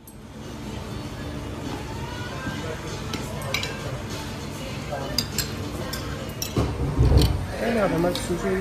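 Restaurant dining-room ambience: indistinct voices and a low steady hum, with scattered clinks of cutlery and crockery and a dull low bump about seven seconds in.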